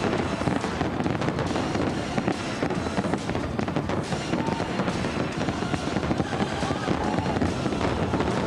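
Aerial fireworks shells bursting in a continuous dense crackle of pops and bangs, heard through a TV broadcast over the display's music soundtrack.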